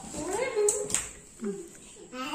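A young child's voice, quiet and high-pitched, making short wordless sounds, with two light clicks near the middle.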